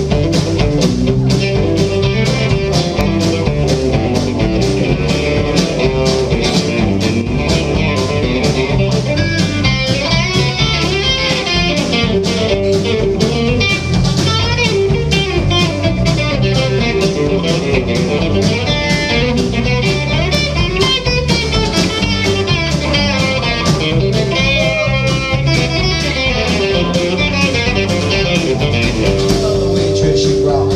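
Live country band playing an instrumental break: an electric guitar lead over strummed acoustic guitar, electric bass and a steady drum beat, with fast runs of notes from the lead about a third of the way in and again past the middle.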